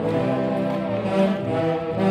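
A brass band playing the dance music, with held chords over a moving low brass line.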